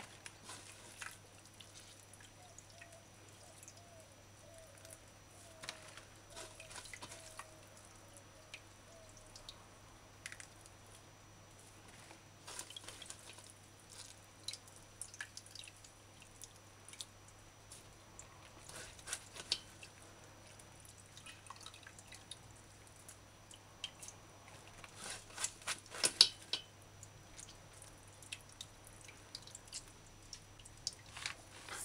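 Coconut milk dripping and trickling into a steel pot as a hand squeezes wet shredded coconut pulp in a plastic strainer. The drips and squeezes are faint and come irregularly, with the loudest cluster near the end.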